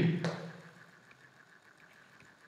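A word spoken at the very start, trailing off within half a second, then near silence: faint room tone.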